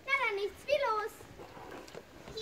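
A high-pitched voice calling out twice in quick succession, with the words not made out.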